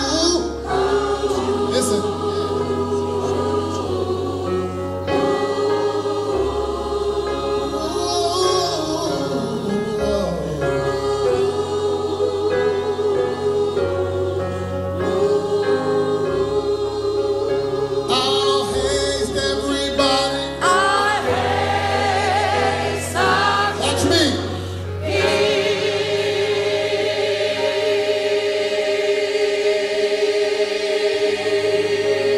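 A large amateur choir singing a gospel song in full voice, in several parts, over a low accompaniment whose bass notes change every second or two.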